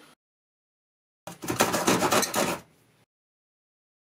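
Hand sheetrock (jab) saw cutting into a wooden cabinet panel: a quick run of short sawing strokes, starting just over a second in and lasting about a second and a half before fading.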